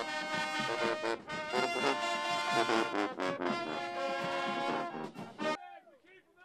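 Marching band playing loud brass music, with sousaphones among the horns. The music cuts off suddenly near the end, leaving faint voices.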